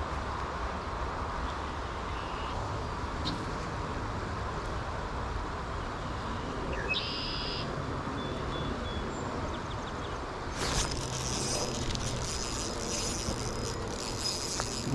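Steady hiss of rain and flowing river water. About ten and a half seconds in, a spinning reel starts a fast, high buzzing with rapid fine ticking as a trout is hooked.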